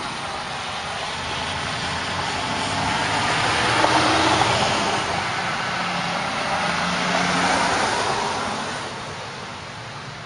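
Passing road traffic: vehicle noise swells to its loudest about four seconds in, swells again a little later, and fades near the end.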